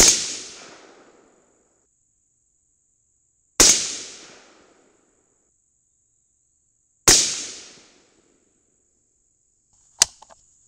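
Three rifle shots from a 22 Nosler AR-style rifle about three and a half seconds apart, each followed by about a second of echo dying away. This is a group of handloads being test-fired.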